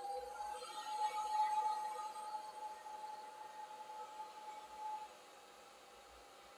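Handheld hair dryer running with a steady whine, aimed at the scalp, fading out about five seconds in.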